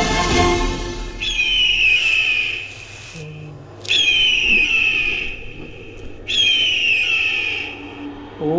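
An eagle screaming three times, each a long falling cry about a second and a half long, with pauses between. Orchestral music fades out in the first second.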